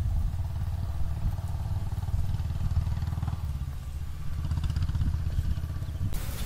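Low, steady rumble of an engine running at an even speed, with a fine regular pulse and little sound above it.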